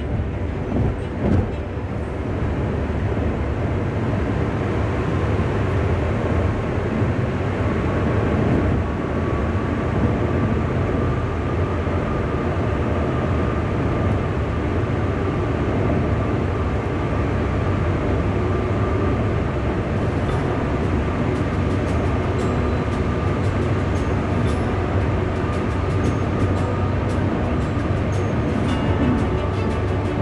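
Road noise of a car driving through a highway tunnel: a steady deep roar of tyres and traffic, with a faint steady whine running through it.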